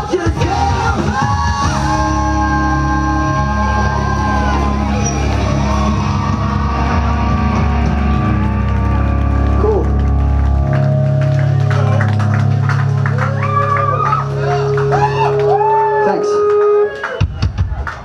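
A live rock band, with electric guitars, bass, drums and vocals, plays loud sustained chords under a sung melody. The music stops abruptly near the end, followed by a quick spoken "Thanks."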